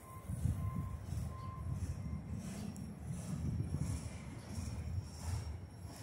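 Last autorack car of a freight train rolling past on the rails: a low, uneven rumble of its wheels and running gear.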